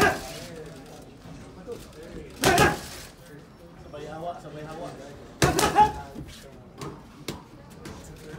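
Boxing gloves cracking into the trainer's pads in fast combinations: a burst of several smacks about two and a half seconds in, another about five and a half seconds in, then single smacks near the end. A murmur of gym chatter runs under them.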